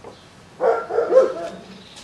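A dog barking: a short run of barks starting about half a second in.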